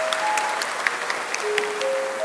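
Applause, heard as scattered claps, under a short tune of four held notes that climb in pitch. The tune plays once and then begins again.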